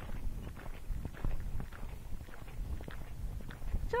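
Tennessee Walking Horse's hoofbeats on arena sand, a steady run of dull thuds as the horse canters under a rider.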